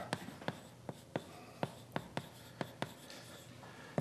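Chalk writing on a blackboard: a faint, uneven run of sharp taps and clicks, about three a second.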